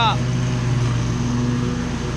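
Commercial stand-on lawn mower engine running steadily, an unchanging drone at a fixed pitch.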